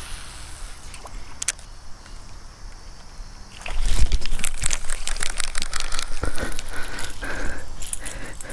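A hooked green sunfish splashing at the surface as it is reeled to the side of a kayak and lifted out of the water. The splashing and sloshing is faint at first and becomes loud and busy about halfway through, with many sharp clicks and rattles mixed in.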